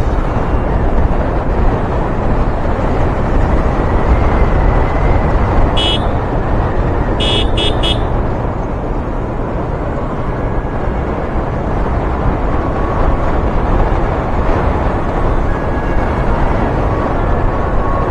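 Wind rushing over the rider's microphone and a motorcycle running at road speed. A vehicle horn beeps once about six seconds in, then three quick beeps follow about a second later.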